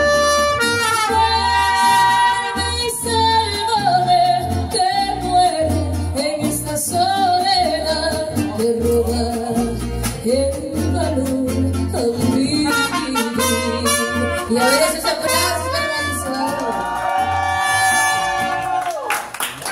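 Live mariachi band playing a ballad, a pulsing bass line under sustained melody lines, with singing. The song reaches its close near the end.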